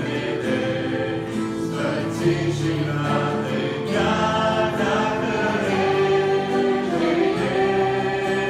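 Mixed youth choir singing a hymn in Romanian, in held notes over instrumental accompaniment.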